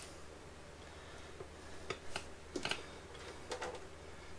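Faint clicks and rustles of hands handling insulated electrical wires and crimp connectors, a few small ticks in the second half, over a low steady hum.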